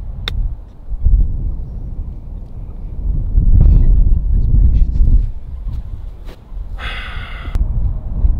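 A golf iron strikes the ball on a short chip, a single sharp click just after the start, over wind buffeting the microphone that swells loudest in the middle. A brief voice comes near the end.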